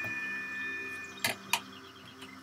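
Two faint, high, steady tones held together that stop a little over a second in, followed by two quick sharp clicks about a third of a second apart.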